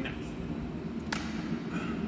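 Steady background hum of room tone, with one sharp click about a second in.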